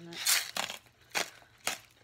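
Plastic salt bag crinkling as it is handled, followed by three sharp clicks about half a second apart.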